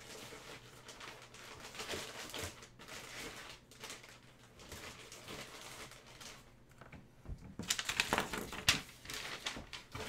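Trading cards and their plastic packaging being handled on a table: irregular soft rustles, clicks and crinkles, busier and louder from about eight seconds in.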